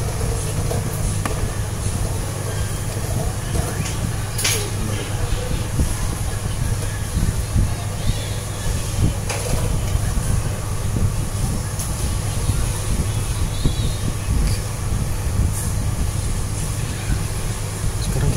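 Steady low rumble of background noise, with a few faint clicks.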